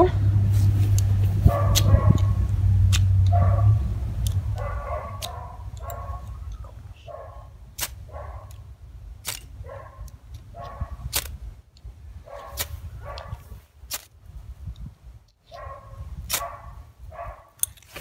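Ferro rod (flint and steel) struck again and again with a steel striker to throw sparks onto tinder: a run of short scrapes about every half second to second, with sharp clicks between them. A low hum fills the first four seconds or so.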